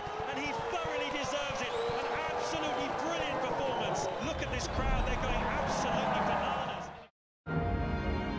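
Excited shouting voices over music that swells from about four seconds in. Everything cuts off abruptly to silence just after seven seconds.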